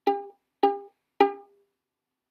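Violin string plucked pizzicato three times, about every 0.6 s, each note dying away quickly: the same note G, stopped with the third finger on the D string.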